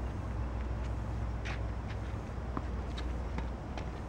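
A few faint, sharp pops of tennis balls struck by rackets and bouncing on a hard court during a rally, over a steady low rumble.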